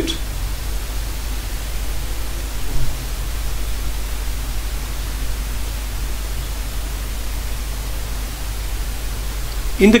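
Steady hiss with a low hum underneath: the recording's background noise, with no other sound in the pause.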